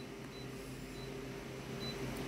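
Multifunction photocopier humming steadily at idle, with a few faint short high beeps as its touchscreen is tapped.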